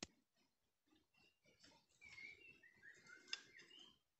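Faint white-rumped shama (murai batu) song: a run of short whistled notes, some sliding down in pitch, mostly in the second half. A sharp click sounds a little over three seconds in.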